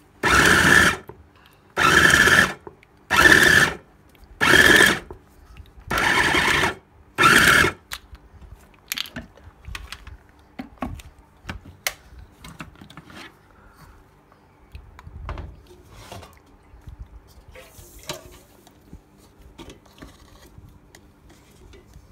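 Electric fufu blender (a chopper-style food processor with a stainless-steel bowl) run in six short pulses of under a second each while the motor top is held pressed down, churning fufu dough. The pulses stop about eight seconds in, followed by light clicks and knocks.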